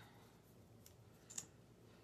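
Near silence broken by two small clicks from a plastic lip plumper tube being handled: a faint one a little under a second in, and a sharper one about a second and a half in.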